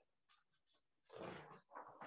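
Near silence, with a faint brief rustle of paper sheets about a second in as a handwritten slide is swapped on the document camera.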